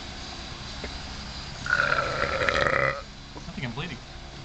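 A person's loud, croaky vocal noise, lasting about a second and starting a little before the middle.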